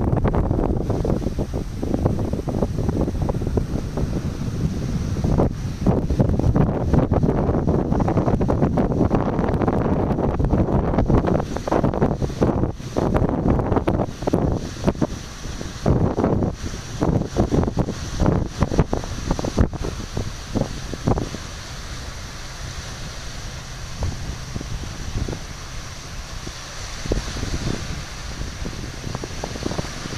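Wind buffeting the microphone in strong, uneven gusts, easing in the last third. As the gusts drop, small waves washing over a pebbly shore come through as a steady hiss.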